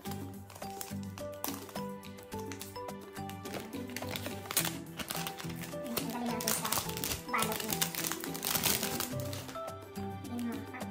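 Background music, with crinkling of a plastic protective film being peeled from a new iPad's screen, loudest in the second half.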